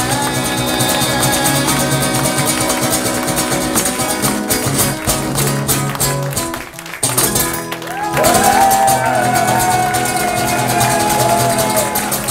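Amplified acoustic guitar strummed hard through the song's closing instrumental passage, with no singing. About seven seconds in it drops out briefly, then comes back with high ringing notes that bend and waver.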